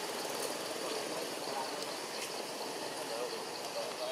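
Steady forest background noise with a faint high insect drone, and a few faint short wavering calls or voices partway through.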